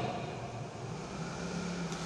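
A pause in a man's talk: the echo of his voice fades during the first half second, leaving low, steady room noise with a faint hum.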